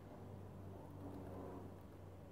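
Faint typing on a laptop keyboard over a low steady hum.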